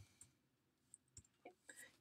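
A few faint computer keyboard keystrokes, about four short clicks in the second half, over near silence.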